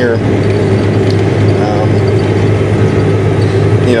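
John Deere 9420 tractor's six-cylinder diesel engine running steadily under load with a low drone, heard inside the cab while the tractor pulls a seven-shank ripper.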